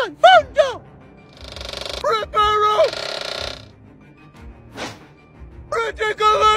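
Corgi giving three short barks at the start, then a longer wavering call about two seconds in, over a shimmering magic-spell sound effect. A brief whoosh near the end.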